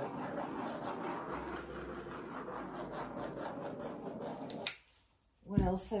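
Small handheld butane torch flame hissing steadily as it is passed over wet poured acrylic paint; the hiss cuts off suddenly near the end.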